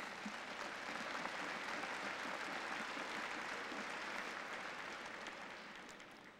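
Audience applauding: a steady spread of clapping across a large crowd that fades away near the end.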